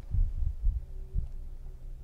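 A few low, muffled thumps over a faint steady hum, the sound of body movement rubbing a clip-on microphone worn on the chest.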